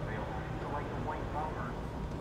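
Indistinct voices of people talking in the background, over a steady low hum.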